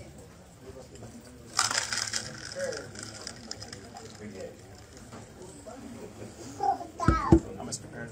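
Low murmur of people in a room. About one and a half seconds in, a brief crackling rustle sounds right at the microphone, like handling noise or a plastic cup being gripped. Near the end comes a short, loud vocal sound.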